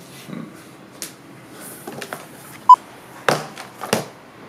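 Aluminium laptops being set down on a hard tabletop: scattered light knocks and thuds, two heavier knocks near the end, and a single very short, bright ping past the middle that is the loudest sound.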